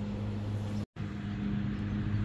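Steady low hum of a small boat motor, broken by a brief gap of silence about a second in.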